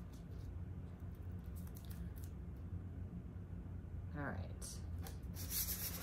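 Faint scattered rustles and light rubbing of an adhesive mesh stencil being peeled up and pressed back down onto window glass, over a steady low hum.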